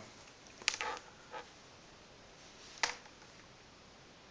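A few sharp clicks and taps as small hand tools are handled: a screwdriver set aside and multimeter test probes picked up and placed. There are two strong clicks, a little under a second in and near three seconds, with a fainter tap between.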